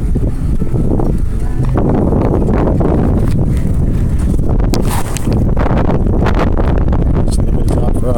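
Wind rumbling on the microphone of a camera riding on a moving bicycle, with irregular rattling and knocks from the bike and its mount as it rolls over the path.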